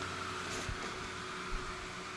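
Blower fans of airblown Halloween inflatables running steadily: an even whir with a faint steady hum.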